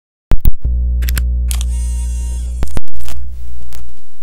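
Produced intro sound effects: a couple of sharp clicks, then a deep steady electronic hum with a brighter swell over it, cut by a loud hit about three quarters of the way in that dies away.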